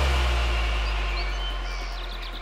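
Breakdown in a psychedelic trance track with no beat. A deep bass note slowly fades, and a few short, high, bird-like chirps sound above it.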